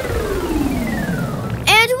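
A synthesized tone glides steadily downward in pitch for about a second and a half over a low rumble, a cartoon music or sound-effect cue. A child's voice starts near the end.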